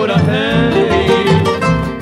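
A Paraguayan polka from a 1957 recording, played on Paraguayan harp and guitars over a plucked double bass that keeps a steady bouncing rhythm.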